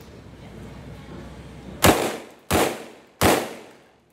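Three gunshots about two-thirds of a second apart, starting a little before halfway, each with a short fading echo.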